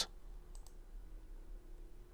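Two faint computer mouse clicks about half a second in, over a low steady hum.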